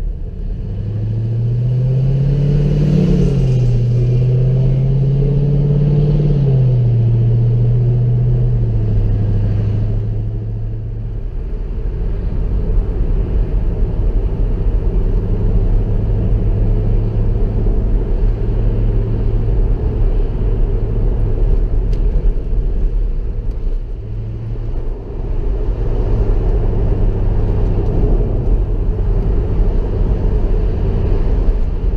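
Mercedes-Benz SLK 55 AMG's V8 engine pulling away through the gears. Its note rises twice in the first few seconds, dropping back between the rises as it changes up, then settles to a steady cruising drone under road and wind noise.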